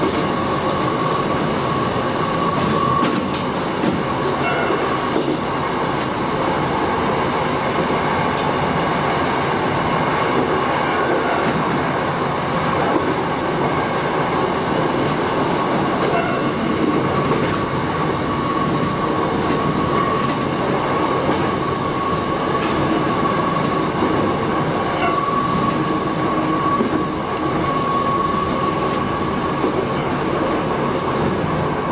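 Shin-Keisei 8000 series electric train running steadily, heard from the cab. Wheels roll on the rails with occasional short clicks over rail joints, and a steady whine sits over the running noise.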